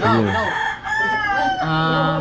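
A rooster crowing, one long drawn-out call starting about half a second in, after a brief laugh.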